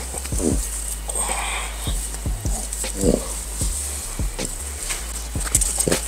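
French bulldog making a few short vocal sounds, spread through the seconds, over a low steady hum.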